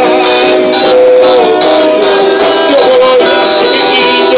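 A man singing a worship song into a handheld microphone, amplified through a PA over instrumental backing, holding and sliding between long notes.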